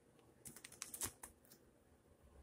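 A page of a ring-bound sketchbook being turned: a quick, faint run of small clicks and paper ticks from about half a second to just over a second in.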